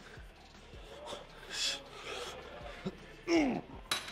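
Heavy exhaled breaths from a weightlifter straining through reps, then a loud grunt of effort whose pitch falls, about three and a half seconds in. A short sharp click follows just before the end.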